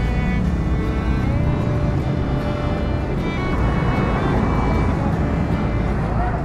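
Steady rumble of wind and rolling noise on the microphone of a camera riding on a moving bicycle, with background music underneath.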